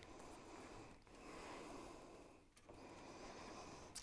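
Near silence: room tone with three faint, soft hisses.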